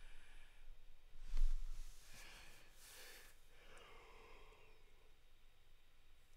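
A man sighing: a thump about a second and a half in, then a long breathy exhale that trails off with a faint falling voice.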